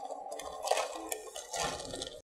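Ice cubes tipped from a plastic bag clattering into a plastic bowl: a quick run of small clinks and rattles.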